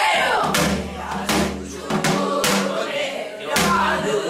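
Several women singing a Korean Namdo folk song together in unison, voices wavering and sliding in the Namdo style, with a few sharp strokes on a buk barrel drum marking the beat.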